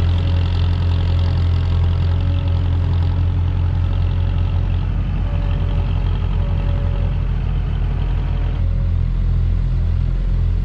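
Tractor engine running steadily close by, a loud low drone; a higher whine over it drops out about nine seconds in.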